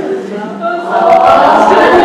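Roomful of people laughing together at once, swelling about a second in.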